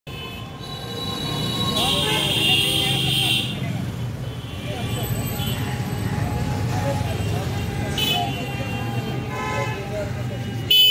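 Road traffic running steadily, with vehicle horns honking: one long honk about two seconds in lasting over a second, then short honks near the end.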